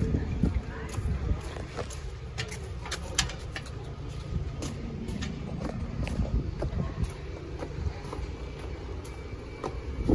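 Wind rumbling on the microphone while walking, with scattered footfalls and knocks on the boards of a wooden boardwalk.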